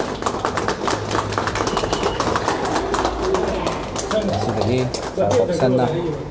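A crowd applauding with many rapid claps, with people's voices talking over it.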